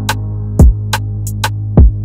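Hip-hop type beat instrumental in C minor at 89 BPM: a held low bass note with two deep kick hits that slide down in pitch, about half a second in and near the end, and sparse hi-hat ticks.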